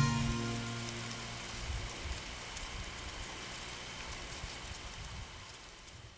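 The last note of plucked-string music dies away in the first second, leaving a steady, rain-like hiss with faint ticks that fades out gradually toward the end.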